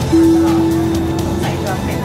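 Metro train car's electronic beep: a single steady tone of about a second and a half that starts suddenly, over the car's low running rumble.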